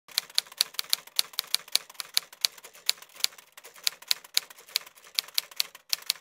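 Typewriter key-strike sound effect: a rapid, slightly uneven run of sharp clicks, about five a second, as of text being typed out.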